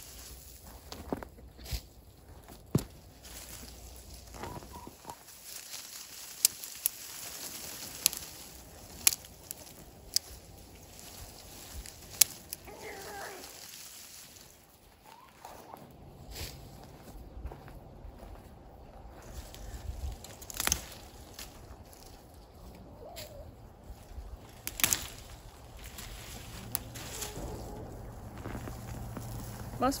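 Frost-killed pepper plants being pulled and handled: scattered clicks and rustles of stems, leaves and clumps of root soil, with a few short calls from poultry.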